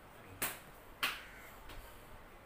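Two sharp clicks about two-thirds of a second apart, the second followed by a brief ringing tail.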